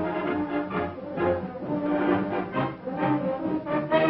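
Orchestral film score with prominent brass, held notes changing every half second or so over a steady, pulsing beat.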